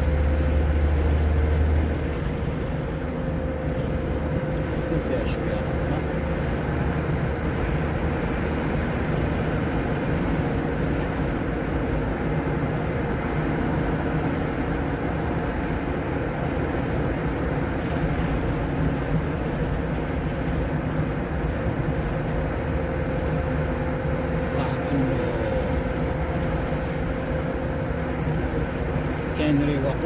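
Car driving along a motorway, heard from inside the cabin: steady tyre and road noise with a low engine hum. A deeper rumble in the first two seconds eases off after that.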